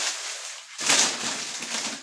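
Rustling and handling noise as an item is put away on a pantry shelf, loudest about a second in.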